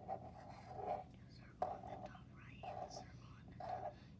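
Black felt-tip marker squeaking and scratching on paper in four strokes. A longer stroke for a small circle comes first, then three short strokes for eyelashes about a second apart.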